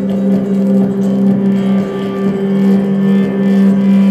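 Belly dance music with a sustained low drone note held steadily, under a busier musical texture.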